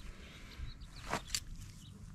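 Faint outdoor background with a brief rustle and a click about a second in: handling noise as the hydraulic control valve is moved and set down on the grass.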